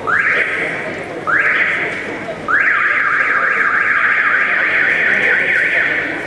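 A siren-like wail: three short rising whoops about a second apart, then a long one that warbles rapidly up and down for over three seconds.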